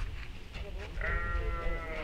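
A sheep bleating once, a single call of about a second that starts halfway through.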